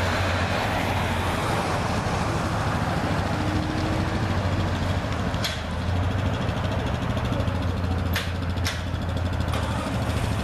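Road traffic and vehicle engines close by: a steady low rumble of motors and tyres, with a few sharp clicks about halfway through and near the end.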